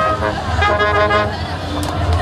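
Brass ensemble of trumpets, trombone and tuba playing the closing notes of a piece: a held chord cuts off just after the start, then a short final phrase of a few notes that fades out. A steady low rumble sits underneath.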